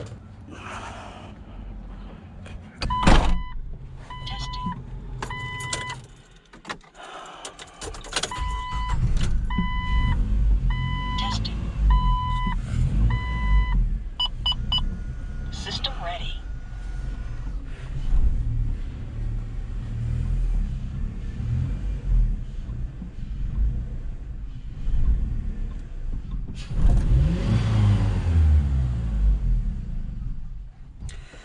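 The Jeep Wrangler's hood slams shut about three seconds in. Then the vehicle's warning chime beeps in a steady on-off pattern while the engine turns over and runs with a low, uneven rumble. The revs sag as it struggles to stay running, a fault later traced to loose starter solenoid terminal cables, and there is a louder burst of engine noise near the end.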